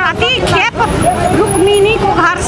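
A woman speaking, with a low rumble of street traffic underneath.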